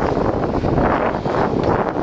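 Wind buffeting the microphone on an open boat at sea, a steady loud rushing noise with no distinct strokes or tones.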